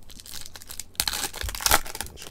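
Foil wrapper of a Topps NPB Chrome baseball card pack crinkling and tearing as it is opened by hand, light at first and much louder from about a second in.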